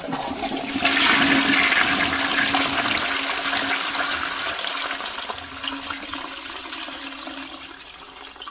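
A stream of water pouring and splashing onto a concrete floor. It rises loud about a second in, then slowly fades, with a faint steady hum underneath.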